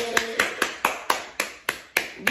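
One person clapping hands quickly and steadily, about four sharp claps a second.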